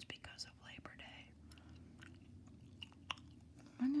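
Close-miked gum chewing: soft wet mouth clicks and smacks, a few sharp ones scattered through, over a faint low hum.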